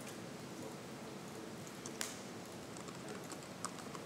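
Typing on a computer keyboard: a few scattered keystroke clicks over a steady low hiss, the sharpest about halfway through.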